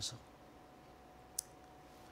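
A single short, sharp click from a handheld presentation remote's button about one and a half seconds in, against a quiet studio background.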